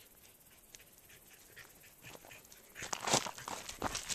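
Chocolate Lab puppy trotting up a gravel track toward the microphone: quick crunching steps, faint at first and loud in the last second or so.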